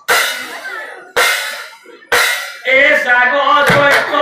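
Three sharp percussion strikes from a nagara naam ensemble, about a second apart, each ringing away, then a man's strong voice declaiming or singing through the last second or so.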